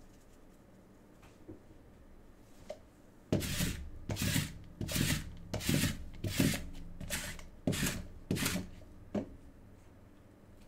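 Hands rubbing and scraping at trading-card packaging in a steady rhythm: about nine strokes, one every 0.7 seconds or so, starting about three seconds in.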